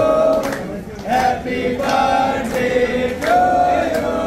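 A group of voices singing together in long held notes, phrase by phrase.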